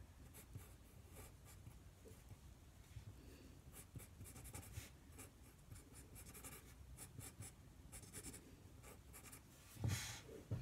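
Pencil scratching on paper in many short, quick sketching strokes, faint throughout and busiest in the second half. A louder knock comes right at the end.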